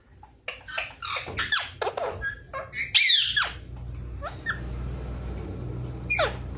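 Caged parakeets calling: a quick run of short squeaky chirps and squawks with falling pitch glides, loudest about three seconds in, with a few more calls after. A low steady hum starts a little after three seconds.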